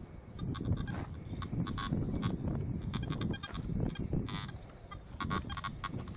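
Wind buffeting the microphone, kind of noisy, with several short warbling tones from a metal detector and scattered knocks.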